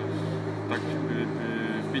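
A steady low hum with faint voices in the background.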